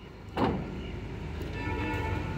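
A sudden thump about half a second in, followed by a pickup truck's engine running with a steady, low hum.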